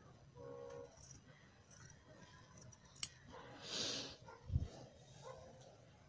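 Tailoring scissors cutting through blouse fabric: a click about three seconds in, then a longer hiss-like cut, the loudest sound here, with soft low thumps just after. Faint overall.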